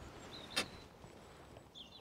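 Quiet outdoor background with one short, faint knock a little after half a second in and a few faint high chirps.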